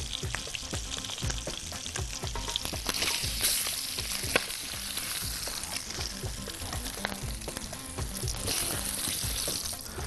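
Chicken drumsticks sizzling steadily as they are seared in hot oil in a frying pan, with scattered light knocks as they are turned with tongs.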